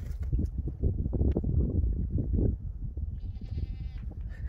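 Low, irregular rumbling and rustling close to the microphone, with a short, faint bleat-like call from a farm animal about three seconds in.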